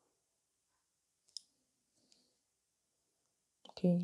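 Near silence, broken by one short, sharp click about a second and a half in and a fainter tick a little later. A voice says "okay" at the very end.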